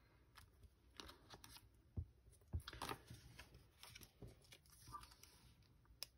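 Faint handling of paper and card stock on a tabletop: soft rustles and a few light taps and clicks, the clearest about two to three seconds in.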